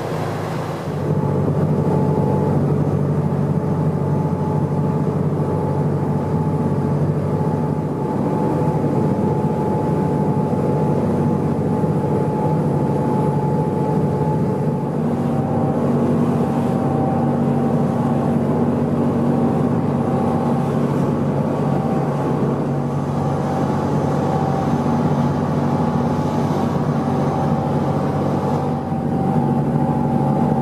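Passenger ferry running underway: a steady engine hum of several tones over the rush of its wake water, getting louder about a second in.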